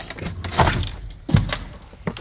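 A door being opened, with a few knocks and rattles and one sharp clack a little past halfway.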